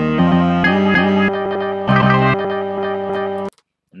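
Chops of a sliced music sample triggered one after another from the MPC Studio's pads. The pitched sample changes character at a series of points, a new slice every half second or so, and cuts off sharply near the end.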